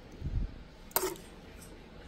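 A metal spoon working meat sauce across a thin aluminium foil pan: a soft low thump about a quarter second in, then a single sharp clink of the spoon about a second in.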